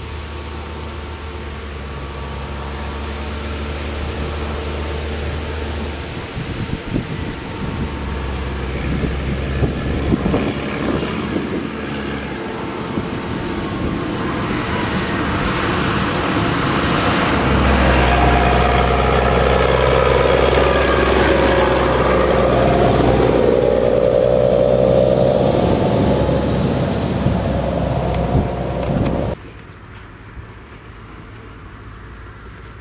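Case IH tractor's diesel engine pulling a loaded maize-silage trailer, growing louder as it comes up the track and passes close by, its engine note shifting in pitch a few times. The sound drops off suddenly about a second before the end.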